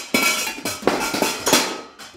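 Kitchen clatter: metal pots, pans and utensils knocking and clinking, about five sharp knocks in quick succession.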